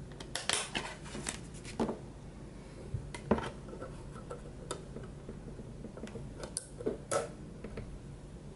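Light clicks, taps and scrapes of a compact disc being handled: slid out of its cardboard case and pressed onto the spindle of a wall-mounted CD player. The clicks come singly and irregularly, about a dozen in all.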